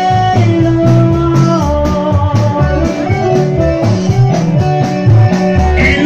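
A live band playing Latin dance music, mostly instrumental here: a melodic lead line over repeating bass notes and a steady beat.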